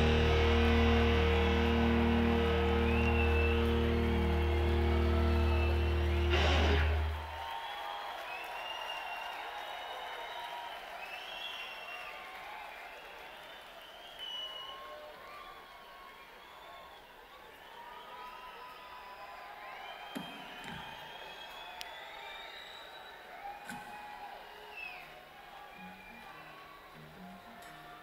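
A rock band's final chord on electric guitar and bass rings out for about seven seconds and stops with one last hit. An arena crowd then cheers and whistles, slowly fading.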